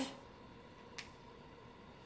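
Quiet room tone with one faint, short click about a second in.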